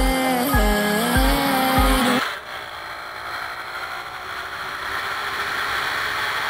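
Background music with a steady beat stops abruptly about two seconds in, leaving the steady noise of a moving Romet Komar moped: wind rush over the microphone mixed with its small two-stroke engine running.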